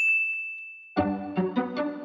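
A single high ding rings out and fades away over about a second. Then the finished trap beat starts playing: a melody of short string-like notes, with no heavy bass or kick yet.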